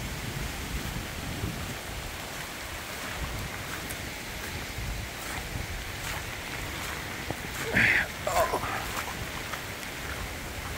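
Steady rain falling in a hurricane rain band, with wind on the microphone. A short, louder sound comes about eight seconds in.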